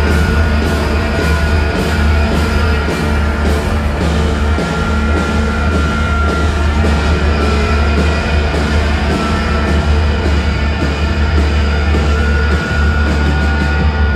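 Loud live rock music: a rock band with heavy bass and a steady drum beat playing together with a brass band of saxophones, trumpets, trombones and clarinets.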